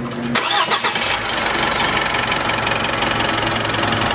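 A motor vehicle engine starting, with a few quick sweeping whirs in the first second, then running steadily at an even idle.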